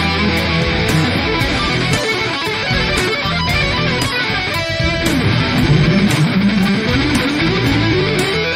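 Distorted-free electric guitar playing a fast lead line over a backing track with drums and bass, the cymbals ticking evenly throughout. Near the end one guitar note slides steadily upward in pitch.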